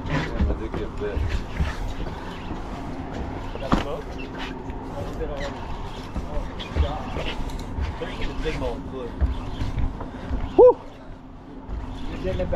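Scattered voices on deck over a steady low hum from the boat's machinery, with low thumps on the microphone. A short loud call comes near the end.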